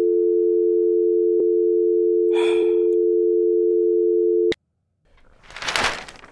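Telephone dial tone after the caller hangs up: two steady tones held together, cutting off suddenly about four and a half seconds in, with a short breath partway through. Paper rustling follows near the end.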